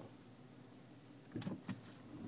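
Faint room tone, then about a second and a half in a few quick, light clicks from a finger pressing and handling a BlackBerry touchscreen phone.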